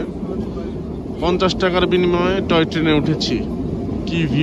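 A person's voice, starting about a second in and lasting about two seconds, over the steady low rumble of the moving narrow-gauge toy train.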